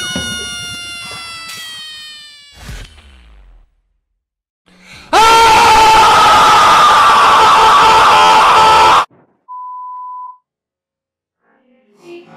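Spliced, heavily edited sound effects. First a ringing note that sinks slightly in pitch and fades over about three seconds, then, after a short gap, a very loud distorted scream lasting about four seconds. A short steady beep follows near the end.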